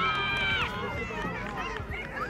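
Players and spectators shouting after a play. One high shout is held for about half a second at the start, followed by several short overlapping calls.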